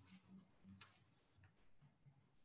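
Near silence: faint room tone with a couple of soft clicks.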